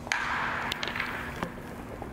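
A baseball bat strikes a pitched ball with one sharp crack, putting it up as a fly ball. About a second and a half of crowd noise from the stands follows, with a few sharp clicks in it.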